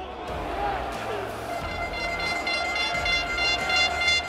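Football match broadcast sound around a goal: a man's voice over the stadium background. About one and a half seconds in, a long steady held tone with overtones joins and lasts to the end.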